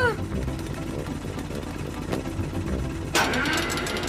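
Cartoon helicopter's engine running with a low, steady hum. About three seconds in, a louder, brighter sound joins it.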